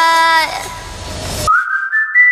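Changeover between two K-pop songs: a held sung note ends and fades into reverb. About a second and a half in, a thin high tone starts and steps up in pitch as the next track opens.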